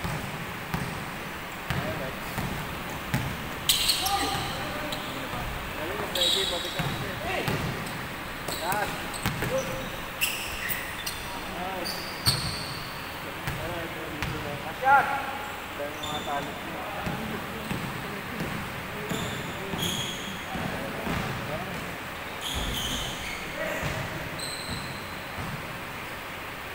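Basketball bouncing on a wooden indoor court during play, with short high sneaker squeaks scattered through it.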